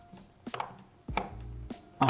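Small wooden puzzle blocks, purpleheart pieces in an acacia frame, knocking against each other as they are pushed and shifted by hand: two sharp wooden clicks, about half a second and a little over a second in.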